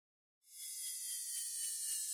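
Silence for half a second, then a faint high hiss with a few faint tones sliding slowly downward.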